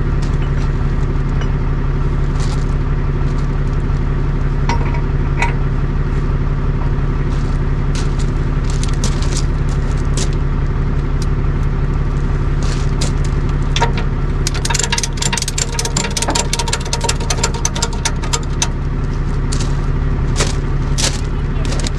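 Tow truck engine idling steadily while metal clicks and rattles come from the wheel-lift's tie-down strap hardware as the car is secured, the clicking growing busy over the last few seconds.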